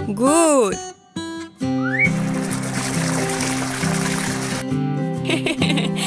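Cartoon sound effect of water sprinkling from a watering can, a steady hiss lasting about two and a half seconds, over light background music. A short wordless character voice rises and falls at the start.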